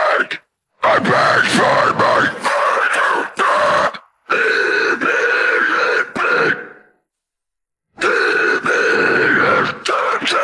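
Isolated deathcore harsh vocals with no instruments: screamed and growled phrases in three long passages with short breath gaps between them. The first passage is more broken; the second and third are long held screams, the last starting about eight seconds in.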